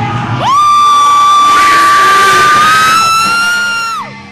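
Loud, sustained high-pitched amplifier feedback squeal ringing out at the end of a live metal song: a single held tone that starts suddenly about half a second in, creeps slightly upward in pitch, and stops at the end.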